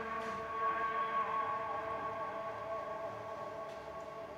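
Background drama score of held string notes, a steady chord that lingers with one note swelling briefly about a second in.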